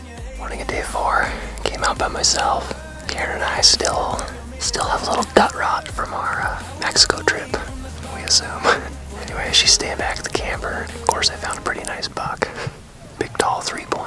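A man whispering close to the microphone in short, breathy phrases, over soft background music.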